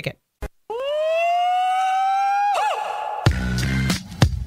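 Radio station jingle going into a break: one long held note sliding slowly upward for about two seconds, then falling away, followed a moment later by bass-heavy bumper music with a beat.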